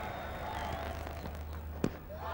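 Steady low murmur of a cricket-ground crowd over a low hum, with a single sharp knock near the end as the cricket ball reaches the batsman.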